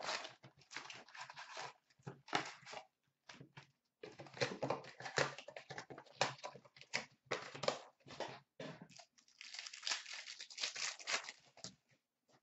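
Hockey card packs from an O-Pee-Chee Platinum box being handled and torn open: irregular crinkling and tearing of the pack wrappers, in quick uneven bursts.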